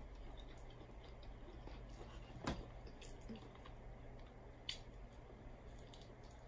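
Faint close-up eating sounds of someone chewing chicken wing meat, with one sharp mouth click about two and a half seconds in and a lighter one near five seconds.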